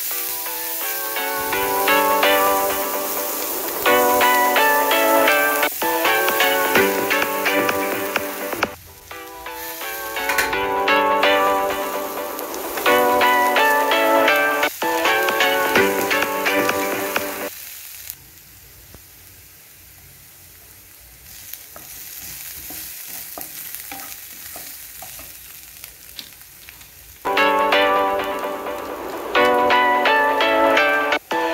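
Chopped onions sizzling in a nonstick frying pan as a wooden spatula stirs them, heard on their own for about ten seconds in the second half. Background music plays over the first half and again near the end.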